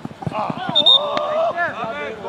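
Players shouting and calling to each other across the field, the voices overlapping, with a single sharp knock a little after a second in.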